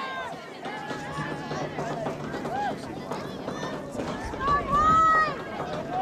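Several people calling and shouting at once, their voices overlapping, with one long, loud call about four and a half seconds in.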